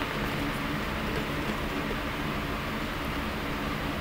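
Steady background hiss with a faint low hum, even throughout, with no distinct events: the room tone of a workshop.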